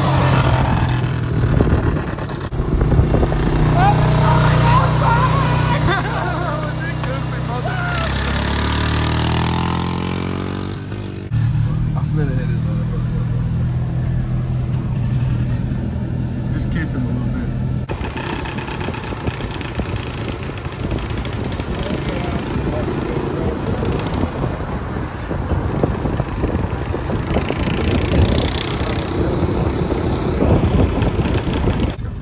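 Vehicle engine running at road speed: a steady drone whose pitch slides down and back up once, about eight to eleven seconds in. The sound changes abruptly at several edits.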